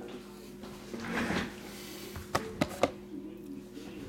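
Shrink-wrapped cardboard trading-card box being handled and laid down on a table mat: a brief rustle about a second in, then three quick knocks past the halfway mark, over a faint steady hum.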